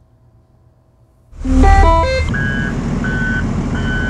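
School bus engine started with the key about a second in, then running with a steady low rumble. As it starts, the dashboard sounds a quick run of stepped electronic tones, then a high beep repeating about one and a half times a second.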